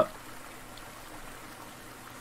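Mountain stream running over rocks: a faint, even rush of water.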